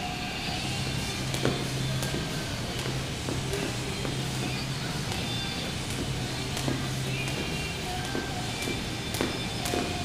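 Background music playing in the gym, with light ticks about every half second from a jump rope striking the floor.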